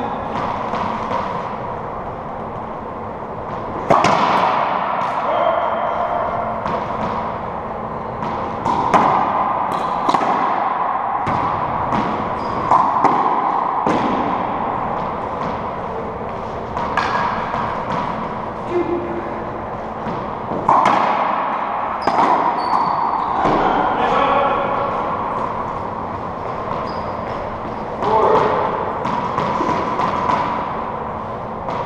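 Racquetball rally in an enclosed court: a rubber ball struck by racquets and cracking off the walls and floor in irregular clusters of sharp hits, each followed by a ringing echo from the court.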